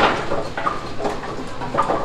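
Brunswick pinsetter's rake mechanism running through its cycle: mechanical clatter of the sweep linkage and gearbox with several short knocks.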